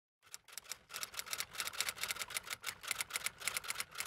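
Typewriter sound effect: a rapid, even run of key clacks, several a second, accompanying a title being typed onto the screen.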